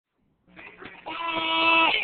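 A drawn-out animal-like cry holding one steady pitch, rising out of silence and loudest about a second in.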